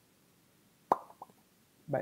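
Near silence, broken about a second in by a man's short, clipped 'Je', and his voice starting again with 'bah' at the very end.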